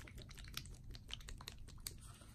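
Bottle of white paint being shaken by hand: a quick, irregular run of faint clicks and rattles.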